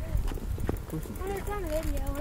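A boy's voice, unclear or half-spoken, with a drawn-out wavering tone in the second half. A few light clicks and knocks come from the phone being handled.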